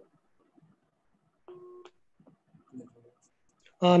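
A short electronic beep, a steady tone lasting about a third of a second, about a second and a half in, among faint scattered clicks; a man's voice comes in just before the end.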